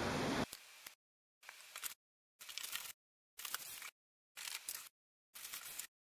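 Near silence: faint background hiss that drops out and returns in short patches.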